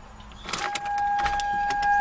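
Ignition key turned with a short rustle of keys, then a steady electronic warning tone comes on about half a second in and holds.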